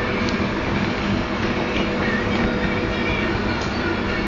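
Steady drone of commercial kitchen machinery, such as the ventilation hood and conveyor pizza oven blowers, with a constant low hum and a few faint ticks.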